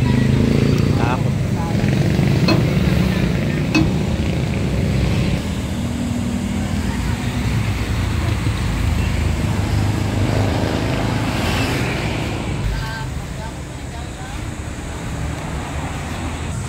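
Steady low rumble of road traffic with people talking, and a few sharp knocks in the first few seconds.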